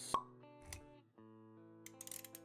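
Logo-animation sound effects over soft music: a sharp pop just after the start, then held plucked notes with a low thud a little before the middle, and a few quick clicks near the end.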